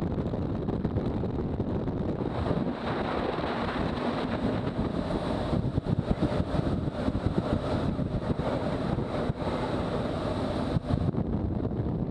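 Wind rushing over the microphone of a motorcycle-mounted camera at about 50 mph, buffeting unevenly, with the BMW R1200GS's boxer-twin engine running underneath.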